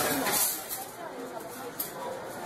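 Indistinct voices and the general clatter of a busy service counter, with a short click near the end.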